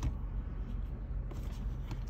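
Steady low rumble of a stationary car's cabin, with a couple of faint ticks late on.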